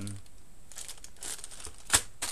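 Thin plastic bag of small plastic game figures crinkling as it is handled, a run of crackly rustles with one sharp, loud crackle near the end as the bag is set down into the box.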